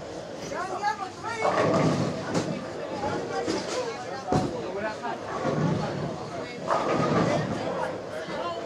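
Bowling-alley room sound: indistinct voices of people talking, with one sharp knock about four seconds in.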